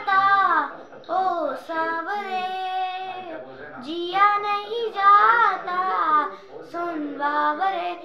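A boy singing a Hindi film song solo and unaccompanied, in long notes that slide up and down in pitch.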